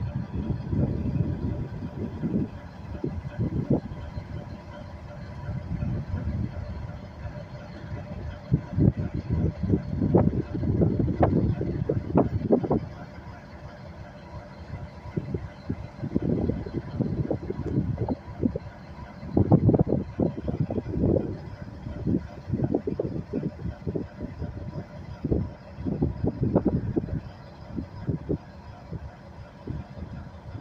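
A CSX SD70ACU diesel-electric locomotive running close by: a steady hum under irregular low rumbling surges that rise and fall, easing off for a few seconds around the middle.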